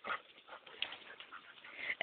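A Rhodesian ridgeback mix tugging at a vine hanging from a tree: faint, scattered rustles and short clicks.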